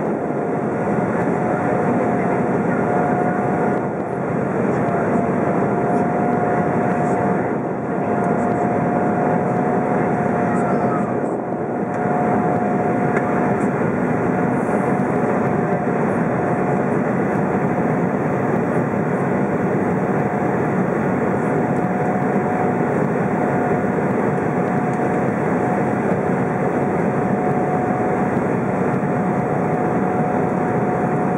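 Cabin noise inside an Embraer E190 airliner descending towards landing: the steady rush of air and drone of its twin GE CF34-10E turbofan engines, with a thin steady whine running through it. The level dips briefly three times, at about 4, 8 and 11 seconds in.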